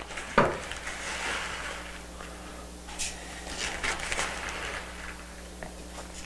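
Red plastic tablespoon scooping powdered calcium-magnesium fertilizer from a plastic zip-top bag into a plastic measuring cup: light rustling and scraping, with a sharp click about half a second in and a few fainter clicks later.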